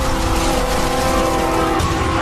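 Loud, steady roaring rush of noise with several held steady tones over it that stop just before the end. This is a dramatized sound effect of the de Havilland Comet jet airliner breaking up in flight.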